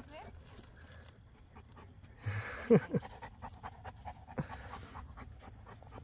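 A Cane Corso panting, open-mouthed, in quick faint breaths.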